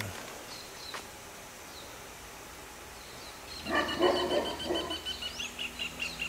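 An animal calling: quiet at first, then from about halfway through a pitched call that breaks into a high note pulsing rapidly, several times a second.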